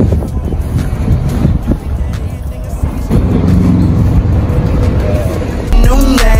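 City street noise with a dense low rumble of traffic and some indistinct voices. Near the end a song with a heavy bass line cuts in suddenly and louder.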